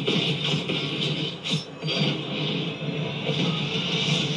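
Film trailer score music playing continuously, with sharp percussive hits spread through it.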